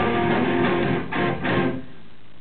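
Live band playing the last strummed guitar chords of a song: the full band gives way to a few separate chord hits, then the music stops shortly before the end.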